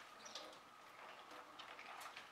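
Near silence: room tone, with a few faint soft handling sounds as wet silicone gloves are hung up to dry.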